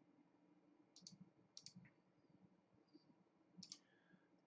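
Near silence with three faint clicks of a computer mouse, about a second in, just past one and a half seconds, and near the end.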